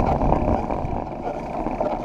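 Wind rushing over the microphone of a camera mounted on a moving road bicycle, a steady low rumble that swells and eases a little.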